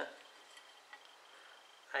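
Very quiet room tone with a faint, thin high-pitched tone that comes and goes, and one or two soft ticks.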